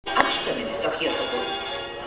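A film's soundtrack played to an audience over loudspeakers: music with speech, with a sharp click near the start.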